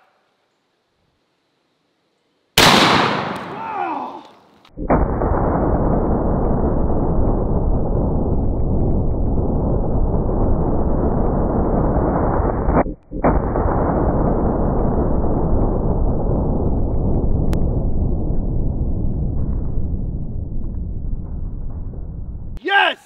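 A single shot from a .700 Nitro Express double rifle's left barrel about two and a half seconds in, sudden and very loud, with a brief voice just after. From about five seconds in comes a long, steady, low rushing noise, broken once for a moment about thirteen seconds in.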